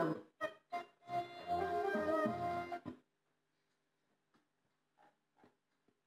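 Music played through the loudspeaker of a Grundig 4017 Stereo radio, cutting off suddenly about three seconds in, followed by a few faint clicks.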